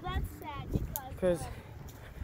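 Speech only: a young man talking quietly in short broken phrases.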